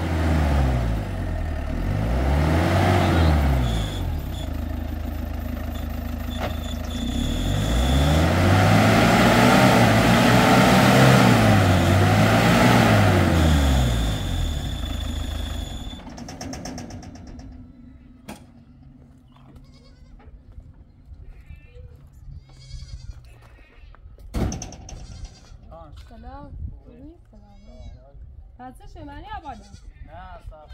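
Small pickup truck engine revving up and down as the truck drives over muddy ground, in two surges, the second and longest about eight to fourteen seconds in, then dying away about halfway through. Short bleats of goats or sheep follow near the end.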